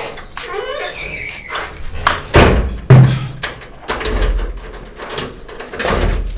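Heavy wooden door being handled and shut, with two loud knocks about half a second apart a little over two seconds in.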